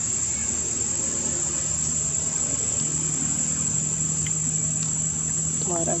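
Steady, high-pitched chorus of insects, crickets or cicadas, singing without a break. A low steady hum joins about three seconds in, and a brief pitched vocal sound comes near the end.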